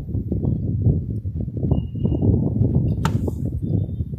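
A steady low rumble throughout, with a single sharp click about three seconds in as a desktop RAM module is pressed down into its motherboard slot and the slot's retaining clip snaps shut.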